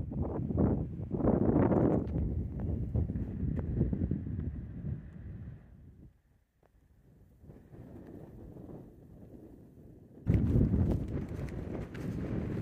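Wind buffeting the camera microphone in gusts. It drops away to near silence about halfway through, then returns faintly and grows stronger again near the end.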